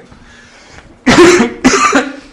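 A man coughing: two loud, harsh coughs in quick succession, about a second in.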